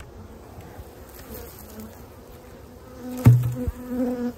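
A honeybee colony buzzing in a steady hum as its hive is opened. A single loud knock comes about three seconds in.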